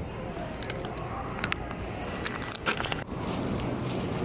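Plastic packaging crinkling, with scattered sharp clicks and crackles as it is handled. The clicks come thickest a little before three seconds in.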